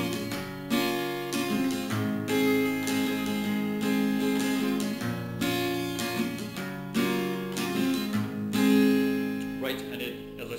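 Acoustic guitar with a capo on the first fret, strummed in a steady repeating pattern through A minor, F and G chords, each chord ringing between strokes.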